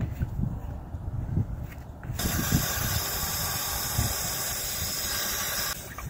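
Water running from an outdoor spigot into a one-gallon plastic hand-can sprayer, a steady hiss that starts about two seconds in and stops abruptly shortly before the end. A few low knocks of handling come before it.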